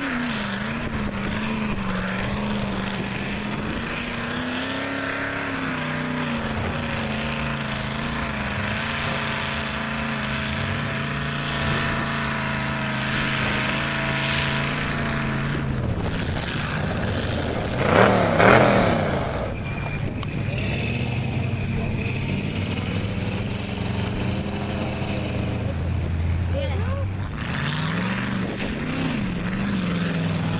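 Lifted pickup truck engines revving as the trucks churn through a mud pit, the pitch rising and falling with the throttle. There is a brief, louder burst of sound about two-thirds of the way through.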